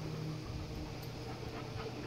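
A harlequin Great Dane panting with its tongue out, over a faint steady low hum.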